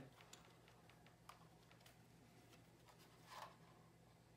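Near silence: a few faint clicks and taps as a check valve is pushed down into the discharge port of a Grundfos circulator pump, over a low steady hum, with one soft rustle a little past three seconds in.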